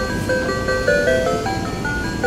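Electronic melody from a baby walker's musical play tray, set going by pressing its light-up button: a simple tune of quick single notes, several a second.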